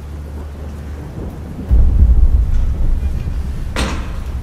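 A deep, thunder-like rumble that swells suddenly about two seconds in and then holds, with a single sharp crack near the end.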